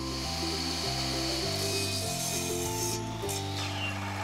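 Background music, with a Craftsman miter saw cutting a 2x4 underneath it; the saw's high hiss stops about three seconds in.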